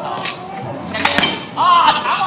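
Replica sparring swords striking each other: a few sharp clacks, the loudest around a second in, followed near the end by a man's voice calling out.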